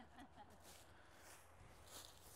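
Near silence: faint outdoor background with a few soft, brief rustles.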